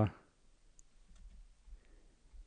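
A few faint, scattered clicks from working a computer, after a spoken word trails off at the very start.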